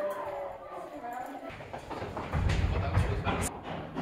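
Footsteps and faint voices echoing in a stone tunnel, with a low rumble for about a second near the middle.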